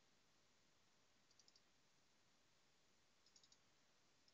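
Faint computer mouse clicks over near-silent room tone: a quick cluster of clicks about a second and a half in, and another near the end, as folders are double-clicked open.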